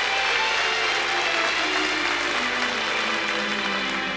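Audience applauding, the clapping thinning toward the end, while an orchestra begins a slow introduction beneath it, a few held notes stepping down in pitch.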